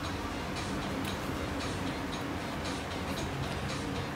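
Light ticks, a few a second and unevenly spaced, over a low steady hum.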